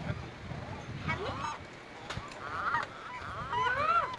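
Gulls calling: short runs of harsh, quickly repeated notes, with the loudest run near the end.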